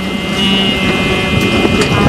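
Boat motor running steadily as the boat moves across the water, a low rumble with wind on the microphone and a faint steady high-pitched whine over it.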